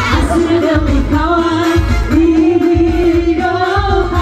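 Women singing a Batak pop song into microphones through a PA system, over amplified backing music with a steady pulsing bass beat; the voice holds long notes that bend in pitch.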